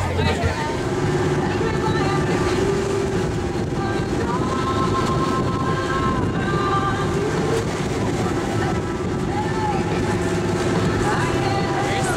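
A catamaran under way, its engine running with a steady drone.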